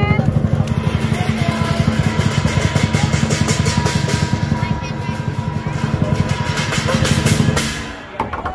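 Lion dance drum beaten in a fast continuous roll, with cymbals clashing over it, stopping shortly before the end.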